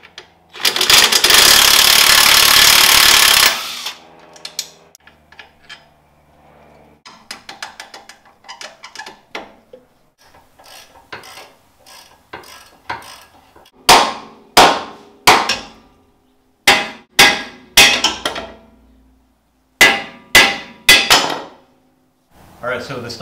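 DeWalt 20V cordless impact wrench hammering for about three seconds, spinning out a steering stabilizer bolt. Light clinks of tools and parts follow. Past the halfway point a hammer strikes metal about eleven times in three quick groups, each blow ringing.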